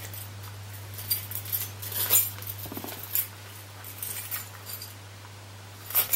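Faint handling of a Louis Vuitton six-ring key holder as it is opened and searched: scattered soft clicks and rustles, over a steady low hum.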